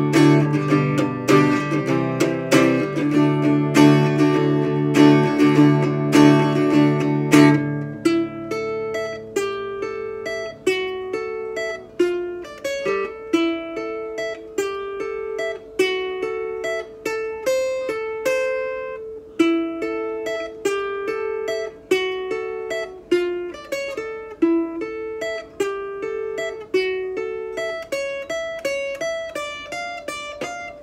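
Ibanez PN1 parlor-size steel-string acoustic guitar being played solo: full ringing chords with strong bass for the first eight seconds or so, then a repeating pattern of single picked notes.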